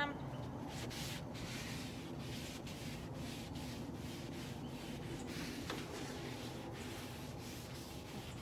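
Paper towel rubbing across the oiled flat-top of a Blackstone griddle in steady wiping strokes, spreading oil to season the cooking surface.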